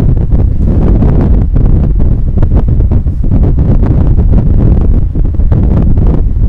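Loud, rumbling buffeting of moving air on the microphone, like wind noise, uneven from moment to moment.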